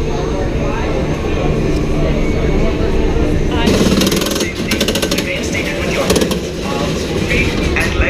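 Crowd chatter in a ride's loading station. About three and a half seconds in, a loud, fast mechanical rattling starts and runs for about three seconds.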